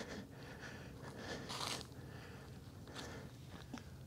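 Faint crunching footsteps on a leaf-littered dirt trail, a few soft scuffs and small ticks over low background noise.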